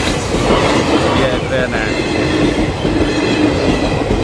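Passenger train coaches rolling past close by, a loud, steady rumble of wheels on the rails.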